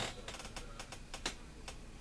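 A few faint, irregularly spaced clicks and light ticks, as of small handling or movement noises.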